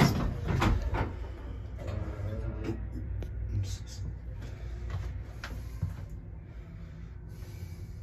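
A 1965 Otis hydraulic elevator's sliding door in motion: a series of clicks and rattles over a steady low hum.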